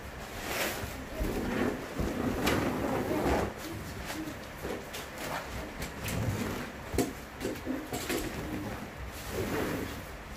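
Bedding and a foam mattress being handled: fabric rustling and soft bumps as the mattress is lifted and stood on its edge against the wall, with a sharp knock about seven seconds in.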